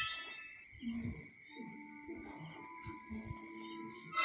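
A bright electronic reward chime from a phone app rings out and fades during the first half second. After that it is quiet, with only faint, scattered low tones.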